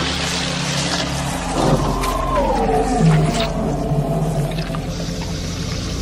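Horror-film soundtrack: sustained low droning score tones, with a long falling wail starting about two seconds in.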